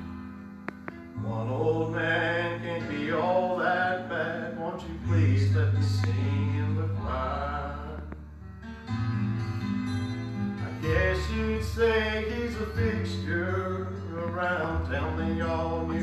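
Church choir singing a gospel song with instrumental accompaniment, sung voices moving over steady low notes that change every second or two.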